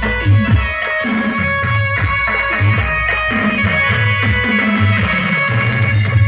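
Dance music played over a sound system, with a steady heavy bass beat and drums under a sustained high melody.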